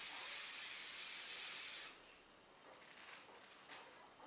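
Aerosol hairspray can sprayed in one steady hiss that stops about two seconds in, setting a teased section of hair held upright.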